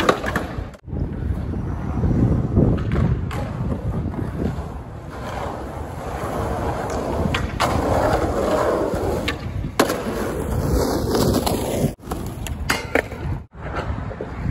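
Skateboard wheels rolling loudly over concrete, with several sharp clacks of the board scattered through.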